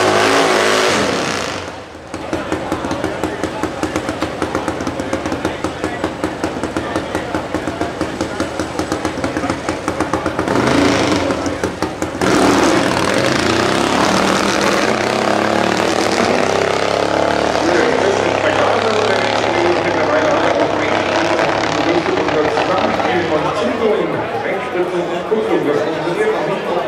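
Super Twin Top Gas drag-racing motorcycles' V-twin engines running at the start line, then a sudden, louder rise about twelve seconds in as a bike launches and accelerates down the strip, its pitch bending and slowly falling away near the end.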